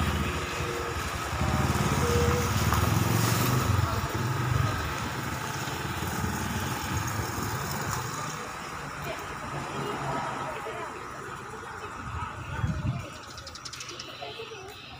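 A vehicle engine running with a low rumble, loudest over the first few seconds and then fading away, with people's voices in the background.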